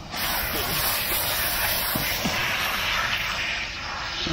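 Water spraying steadily from a pistol-grip garden hose nozzle onto a wet dog's fur. The spray starts abruptly just after the start and eases slightly near the end.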